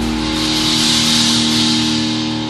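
Heavy metal music: a distorted electric guitar chord held and ringing, with the low drums and bass falling away as it begins.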